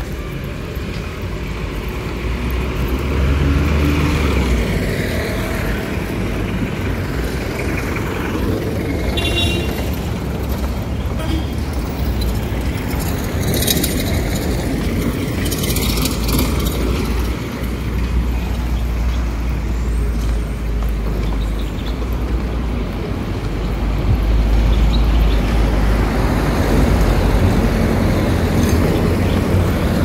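Street traffic: vehicles passing on a road, over a constant heavy low rumble.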